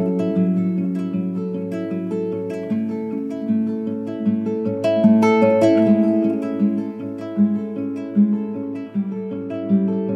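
Calm instrumental music played on plucked acoustic guitar, with notes left ringing over a low bass line.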